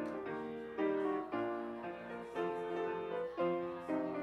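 Piano playing a slow hymn-like tune in full chords, about two chords a second, each ringing and fading before the next is struck.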